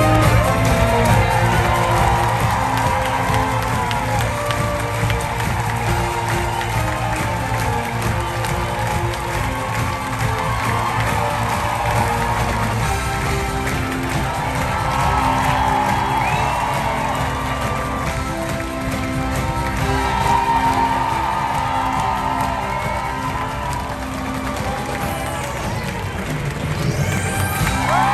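A live theatre orchestra playing upbeat music under a large audience clapping and cheering, with scattered whoops.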